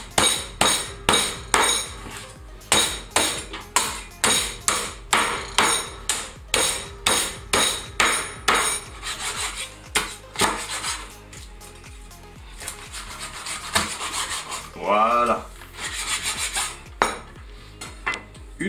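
Meat cleaver chopping through the bones of a raw chicken carcass on a wooden cutting board: a run of sharp chops, about two or three a second, for the first half, then quieter scraping and knocking as the pieces are gathered.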